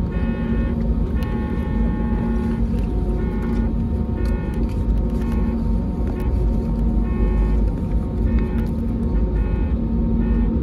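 Airbus A320neo cabin noise while taxiing: a steady low rumble from the engines at idle and the rolling airframe, with a low hum and on-and-off higher tones over it.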